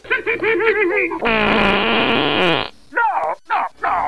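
A person's voice making goofy noises: a wobbling sing-song cry, then a long rasping buzz that falls in pitch, then a few short falling yelps.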